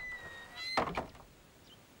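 Wooden door creaking with a thin, steady squeal, then a dull knock about a second in.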